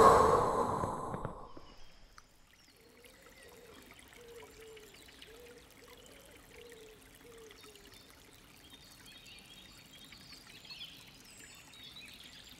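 A man's deep, audible breath, loud at first and fading away over about two seconds. A long stretch of faint background sound follows, with a soft wavering tone in the middle.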